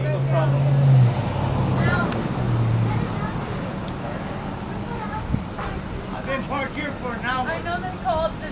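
A motor vehicle engine hums low and steady, fading out about three seconds in, under faint talking voices, with a single sharp click a little past the middle.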